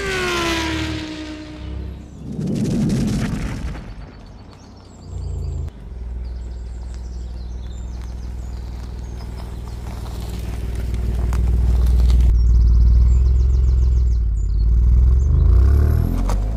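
A short logo sound effect with falling tones, then the Alfa Romeo Giulia Quadrifoglio's 2.9-litre twin-turbo V6 idling with a steady low rumble from about six seconds in, growing louder over the last few seconds.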